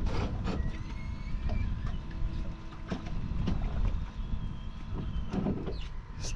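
Power-Pole shallow-water anchors being deployed from the boat: a faint mechanical whine over a steady low rumble, with a few small clicks.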